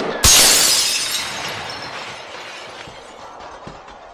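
A shattering sound effect: a sudden loud crash about a quarter second in, then breaking fragments tinkling as it fades over the next few seconds.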